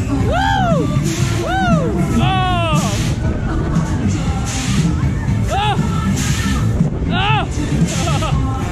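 Loud dance music from a fairground ride's sound system with a heavy bass beat. Several short rising-and-falling whoops sound over it, a quick run of them about two and a half seconds in and two more near the end.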